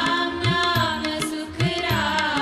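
Hindu devotional hymn sung by a woman, with tabla accompaniment whose deep strokes slide upward in pitch.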